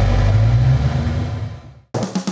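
2004 Ford Mustang GT's V8 engine running with a steady low rumble, fading out near the end.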